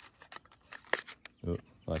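A small white cardboard box being folded by hand, its final tab pushed in to lock it: light, scattered clicks and crackles of creasing card, one sharper click near the middle.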